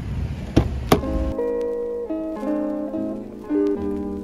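Wind rumble with two sharp clicks close together, then background music on a plucked acoustic guitar or ukulele starts about a second in, picking out a melody in separate notes.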